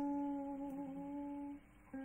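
Guitar playing a slow instrumental melody: one note is held for about a second and a half, then fades, and the next note starts right at the end.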